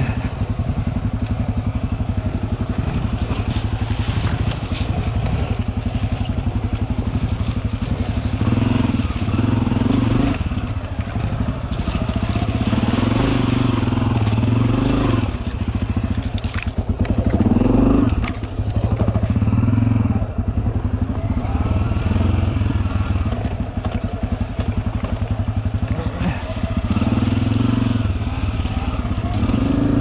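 Dirt bike engine running at low speed on a rough trail, with short swells of throttle every few seconds, the strongest about halfway through.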